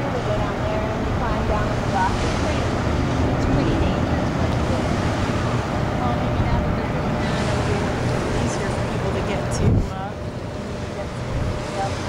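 Steady rush of river water churning through the open floodgates of a hydroelectric dam, with wind buffeting the microphone. There is a brief loud bump on the microphone about ten seconds in, after which the sound is a little quieter.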